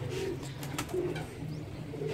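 Teddy pigeons cooing, a soft run of low repeated coos from several birds.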